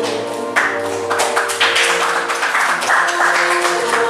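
Background music, with a burst of hand clapping starting about half a second in and running on.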